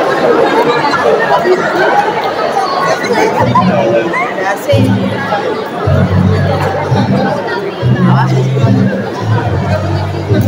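Audience chatter filling a large hall, with steady low music notes coming in about three and a half seconds in and playing in held blocks over the talk.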